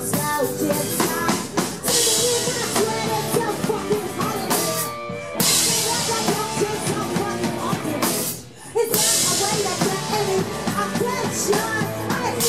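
Live pop-rock band playing: acoustic and electric guitars, keyboard and a drum kit with cymbals. The band stops briefly twice, about five seconds in and again just before nine seconds, then comes back in.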